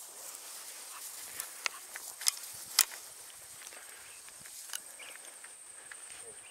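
Footsteps rustling through dry grass with a handful of sharp clicks and knocks, the two loudest about half a second apart near the middle.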